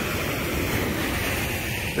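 Steady rush of ocean surf, with some wind noise on the microphone.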